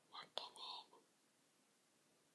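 A person whispering briefly and softly, under a second long, with a sharp click like a lip smack in the middle.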